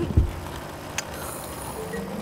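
Cartoon orange-juice machine running with a steady mechanical whir, a thump at the start, a sharp click about a second in and a high hiss near the end.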